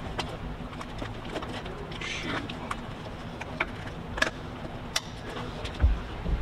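Scattered sharp clicks and small rattles of plastic wiring connectors being handled and plugged back in on a golf cart's fuse and harness area, with a dull thump just before the end.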